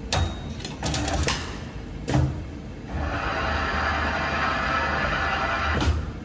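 Automatic bending machine forming a steel strip for a leather-cutting die. A run of sharp clicks and one louder knock come in the first two seconds, then about three seconds of steady whirring, ending in a click near the end.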